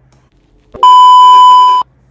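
A loud, steady electronic beep about a second long that switches on and off abruptly: a censor bleep laid over a spoken word.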